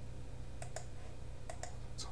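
Two pairs of short, sharp clicks about a second apart, the two clicks in each pair in quick succession, over a steady low hum.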